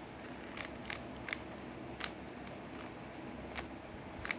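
Layers of a plastic 3x3 Rubik's cube being turned by hand, giving a series of short, sharp clicks at irregular spacing, about six in a few seconds.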